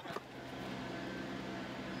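A steady low hum with a light hiss, holding an even level throughout.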